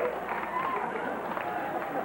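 Overlapping voices of several people talking at once, with no single clear speaker.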